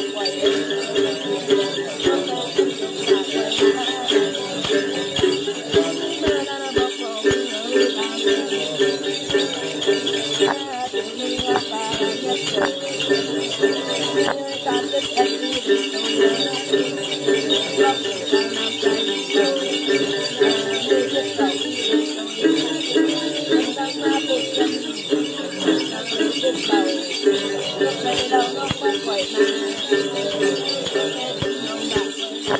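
Tày then ritual singing: a woman chanting to her own đàn tính, a long-necked lute with a gourd body, plucked steadily, over the rhythmic jingle of a bunch of small bells shaken in her other hand.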